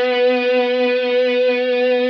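Electric guitar holding one sustained note, B on the fourth fret of the G string, which rings steadily with a full set of overtones.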